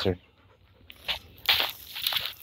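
Short, irregular rustles and crunches of dry leaf litter and twigs underfoot, starting about a second in.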